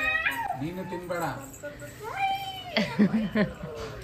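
A toddler's short, high-pitched whiny calls with rising and falling pitch, mixed with adult speech.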